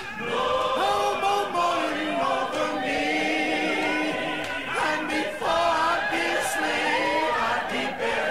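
A choir singing a spiritual unaccompanied, in long held notes.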